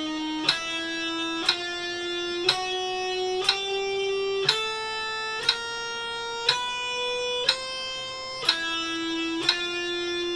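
Electric guitar playing a chromatic one-finger-per-fret drill (frets 5-6-7-8) at 60 beats per minute: one sharply picked, sustained note each second, climbing step by step in pitch. About eight and a half seconds in, the line drops back lower and starts climbing again.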